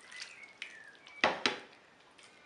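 Metal kitchen tongs clinking against a frying pan and a serving bowl as sauced pasta is served: a few light clicks, with two louder knocks close together about a second and a quarter in.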